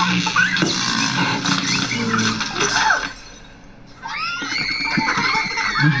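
A small child giggling and squealing over background film music, with a brief lull about three seconds in.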